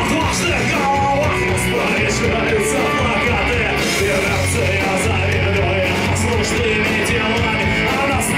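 Rock band playing live: a man singing into a microphone over electric guitar, drums with cymbals and saxophone, with the cymbal and drum strikes coming at a steady beat.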